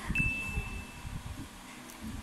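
A single bright chime-like ding, one high steady tone that rings for under a second just after the start, over a low background rumble.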